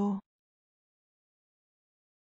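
A synthesized text-to-speech voice finishes the word "piano" (from "đàn piano") in the first fifth of a second and cuts off, followed by complete digital silence.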